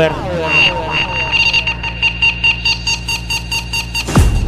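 Electronic dance-track intro: a falling pitch sweep, then alarm-like synthesizer beeps pulsing about four times a second over a steady high tone and a low drone.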